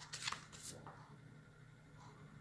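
A few faint, brief rustling scratches in the first second, over a low steady hum.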